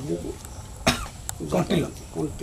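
A person's voice: a short cough about a second in, then a few brief spoken sounds.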